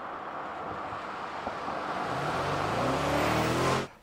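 Bentley Bentayga's 4.0-litre twin-turbo V8 approaching, its engine note rising in pitch and growing louder over a steady rushing hiss. The sound cuts off suddenly near the end.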